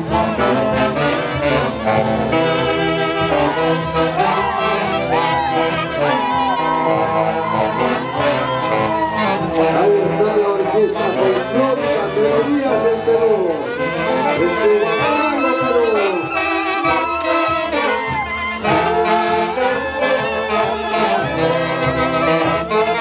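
A street band of saxophones and clarinets playing tunantada, the dance music of central Peru, continuously and loudly, with several melodic lines over a steady accompaniment.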